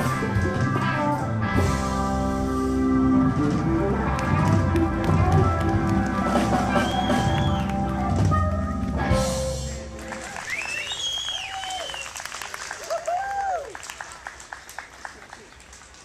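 A live rock band with electric guitars, bass, keyboard and drums plays the last bars of a song and ends on a final chord about nine seconds in. After that comes scattered audience applause with shouted cheers, fading out.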